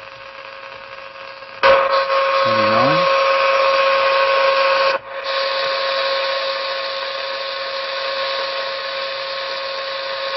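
Noise-bridge noise heard as hiss from a shortwave receiver's speaker while the bridge is adjusted for a null. It starts low, jumps suddenly to a loud hiss with a steady tone in it about 1.7 s in, drops out briefly about 5 s in, then carries on a little softer.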